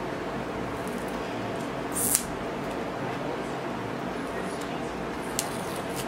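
Steady electric fan noise, with a short rip of paper being peeled off a cardboard eyeshadow palette about two seconds in and a couple of faint ticks later.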